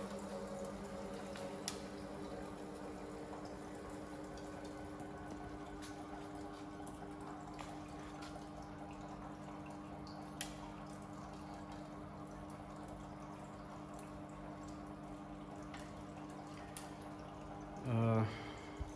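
Desktop filament extrusion line running: a steady hum of several held tones from its motors, with the trickle of the small cooling-water tank and its pump. A few faint clicks sound now and then.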